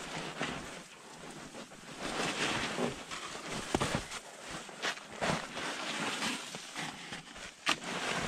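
Snow crunching and scraping as a climber descends a narrow snow couloir on a belay rope, with several sharp clicks and knocks scattered through it, over wind on the microphone.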